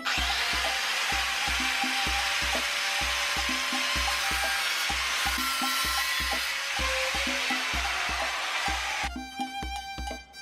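Angle grinder with an abrasive cut-off disc cutting through a flat steel bar held in a vise: a loud, steady grinding hiss that starts abruptly and stops about nine seconds in. Background music with a regular beat runs underneath.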